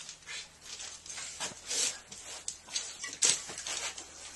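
A hand tool scraping over freshly applied lime Venetian plaster in short, irregular strokes, about two a second, as rough spots and corners on the first coat are knocked down.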